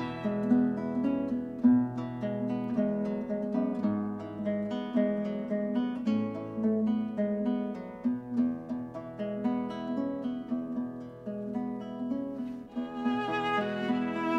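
Acoustic guitar playing a slow plucked solo passage of a Chinese melody, with the violin coming back in with a sustained bowed line near the end.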